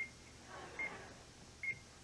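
Game-show countdown clock beeping: three short, high electronic beeps a little under a second apart, with a faint murmur between them.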